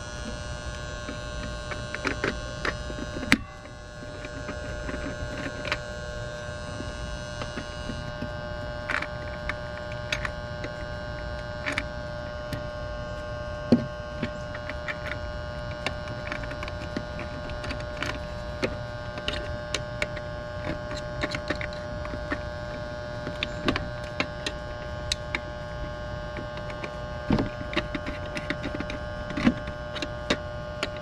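Steady electrical hum made of several held tones, with scattered small clicks and scrapes as wire nuts are twisted onto wires in an electrical disconnect box.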